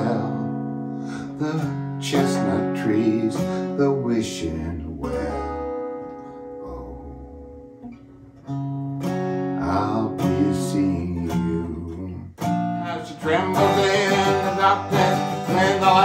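Acoustic guitar played solo: chords are strummed and left to ring, dying down to a low sustain in the middle. Strumming picks up again and grows busier and louder near the end.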